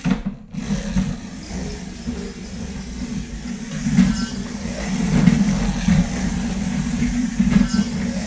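Intelino smart train, a battery-powered toy train, set down on its plastic track with a click, then running along it with a steady low motor hum and wheel rumble that grows louder about halfway through.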